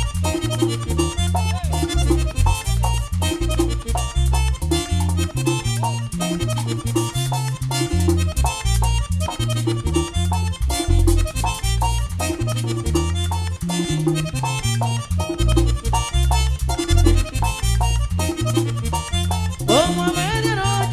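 Merengue típico band playing an instrumental break led by accordion, over a bass line and fast, steady percussion.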